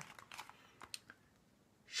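Faint paper rustles and small ticks from a picture-book page being turned and settled, with one sharper tick about a second in.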